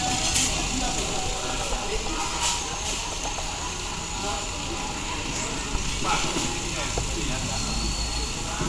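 Eatery ambience: many indistinct voices chattering at once over a steady low rumble, with a few short clinks or clicks.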